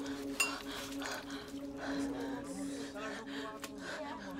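Small objects clattering and clinking on a wooden table as hands grab and shove at them, in irregular knocks over a low steady hum.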